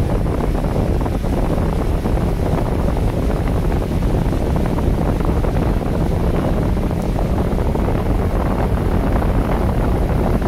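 Steady wind noise on the microphone of a moving boat, over a motorboat engine running steadily and rushing water.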